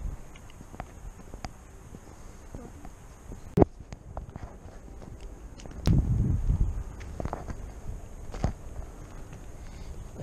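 Footsteps through tall dry grass and brush, with scattered clicks and knocks, the sharpest about three and a half seconds in. A louder low rumble on the microphone runs for about a second and a half just before the middle of the second half.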